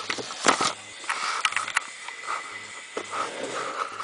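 Handling noise from a camera being moved by hand and propped in place: a few sharp clicks and knocks in the first two seconds, then scattered rustling, over a faint steady high whine.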